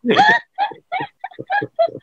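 A man laughing: one longer burst, then a quick run of short ha-ha bursts.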